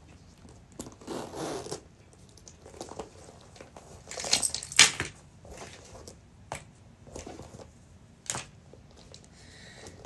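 Handling noise as small items are pulled out of a small coated-canvas barrel bag and set down on a hard tabletop: scattered rustling with a few sharp clicks, loudest about five seconds in.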